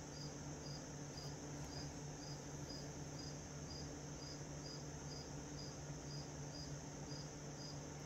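A cricket chirping steadily, a faint high trill that pulses about twice a second, over the low steady hum of a fan.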